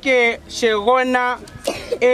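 A man speaking loudly in drawn-out, emphatic phrases, with a short harsh noisy sound about a second and a half in.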